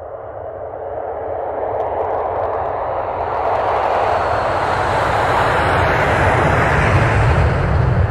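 A swelling roar of rushing noise with a deep rumble underneath, growing steadily louder: a title-sequence sound effect.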